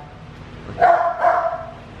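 A dog giving one high, drawn-out call of just under a second, near the middle.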